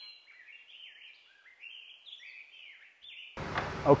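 A songbird singing: a quick run of short chirped notes that step up and down in pitch.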